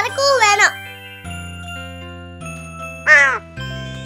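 A voice for a moment, then background music of held notes, with a single crow caw about three seconds in.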